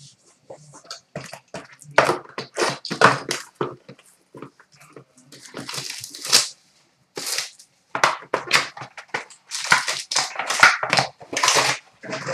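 A sealed trading-card box being handled and torn open: cardboard and plastic wrapping tearing and crinkling in irregular bursts, with light knocks of boxes and cards set down.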